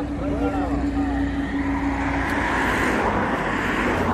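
Highway traffic: a vehicle passing on the road, its tyre and engine noise swelling to a peak about three seconds in and then easing, over a steady low engine hum.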